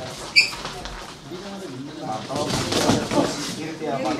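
Voices talking in the gym during sparring, with one short, sharp, high-pitched blip about half a second in that is the loudest sound.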